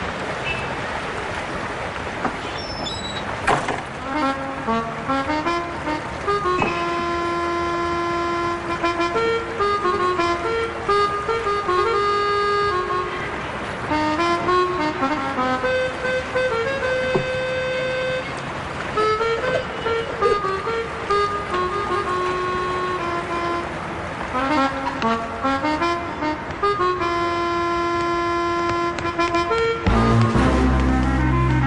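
Background film music: a slow melody of long held notes, some gliding between pitches, begins a few seconds in and carries on over a steady noisy background.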